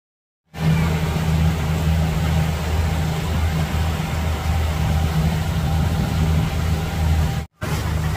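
A speedboat's motor running steadily under way, with wind buffeting the microphone and the rush of water from the wake. The sound starts about half a second in and drops out for a moment near the end.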